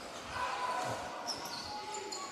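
Basketball bouncing a few times on a hardwood court over the steady background noise of an arena hall.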